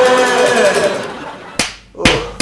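A man's voice holds a drawn-out sung line that fades out over about the first second. About a second and a half in, a single sharp smack of a hand follows.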